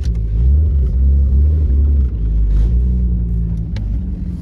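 Freshly rebuilt engine of a 1993 BMW E34 wagon, heard from inside the cabin as it pulls the car away under gentle acceleration during its break-in period. The engine note is low and loud, its pitch climbing briefly at the start and again about two and a half seconds in, with a single sharp click near the end.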